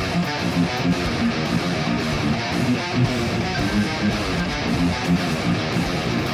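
Seven-string Mayones Setius M7 electric guitar through a Kemper profiling amp, playing a fast, down-picked progressive metal riff at a steady, driving pulse.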